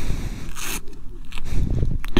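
Rustling and scraping of textile riding gear and gloves close to a clothing-worn microphone, in a few irregular short scrapes.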